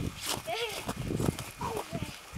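Faint, short calls from children's voices, two brief shouts about half a second and about a second and a half in, over a low rumble.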